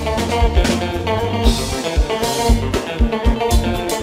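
A live Haitian konpa dance band playing an instrumental passage: electric guitar and keyboards over a steady drum-kit and bass beat.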